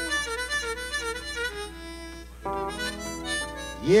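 Blues harmonica playing a phrase of bent notes over electric guitar chords. It drops back about two seconds in, a new phrase starts about half a second later, and a man sings "Yes" at the very end.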